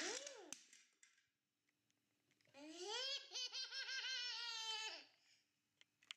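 A toddler's high-pitched laughing: a brief squeal at the start, then after a pause a run of giggles lasting about two and a half seconds.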